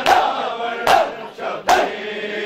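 A crowd of mourners beating their chests in unison (matam), three sharp slaps about 0.8 s apart, with many men's voices chanting between the strikes.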